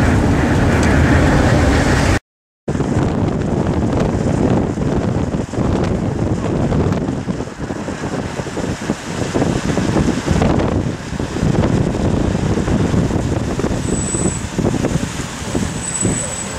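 Road noise inside a moving car, then, after a brief dropout about two seconds in, a gusting rush of wind and road traffic outdoors, rising and falling unevenly.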